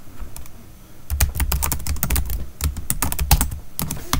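Typing on a computer keyboard: a couple of lone keystrokes, then a quick run of key clicks from about a second in, as a short search phrase is typed.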